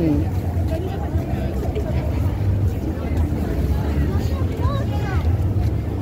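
Busy city street ambience: a steady low rumble of traffic, with indistinct voices of passers-by talking.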